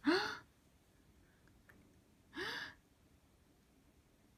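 Baby giving two short, breathy excited gasping squeals, each rising then falling in pitch: a louder one at the start and a softer one about two and a half seconds in.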